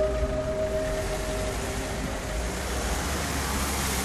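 Soft mallet-percussion music notes fading out in the first second and a half, under a steady low rumble and hiss from a car rolling slowly along the street.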